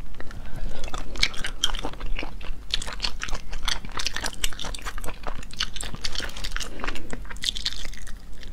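Close-miked chewing and biting of braised sea snail meat: a dense, uneven run of short wet clicking mouth sounds.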